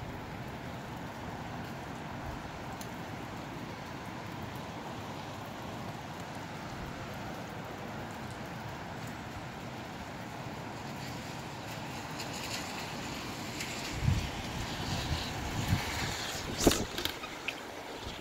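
Gusty wind and rain as a steady rush of noise, growing hissier partway through. In the last few seconds gusts buffet the microphone in a series of thumps.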